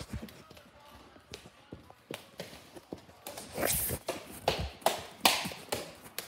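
A dog moving about: scattered light taps and clicks, with a few louder scuffs in the second half.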